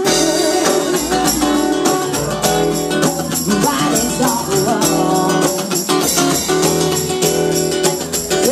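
A small live band playing: a woman singing into a microphone over acoustic guitar and drums.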